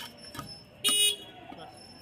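A steel cleaver strikes once through fish on a wooden chopping block, then a short, loud buzzing beep sounds about a second in.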